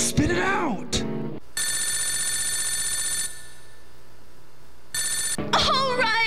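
Telephone ringing: one full ring of about two seconds, a pause, then a second ring that is cut short by singing about five seconds in.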